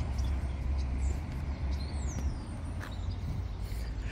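Outdoor background sound: a steady low rumble that eases a little after about two seconds, with a few faint high chirps and one short falling whistle.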